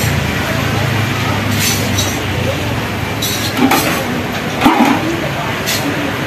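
A metal ladle knocking and clinking against a steel stockpot and ceramic bowls as broth is served, a few separate clinks over a steady background rumble and voices.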